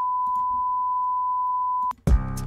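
A steady, high-pitched censor bleep, one unbroken tone that cuts off abruptly just before the end.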